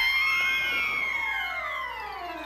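A cartoon cat's long screech, held and then sliding down in pitch as it fades away, as the cat is flung off into the distance.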